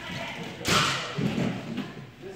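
A single loud thud about two-thirds of a second in, from two fencers sparring with longswords on a wooden floor.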